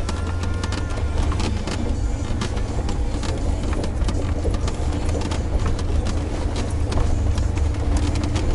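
Cabin sound of a Mercedes G500's V8 engine and drivetrain crawling slowly over a rocky off-road trail: a steady low rumble with frequent short knocks and clatter from stones under the tyres and the suspension jolting.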